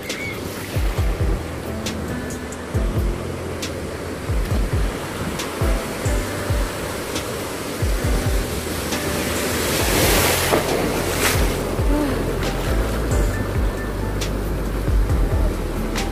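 Ocean surf breaking and washing in the shallows, swelling to a louder rush about ten seconds in, under background music with a steady low beat.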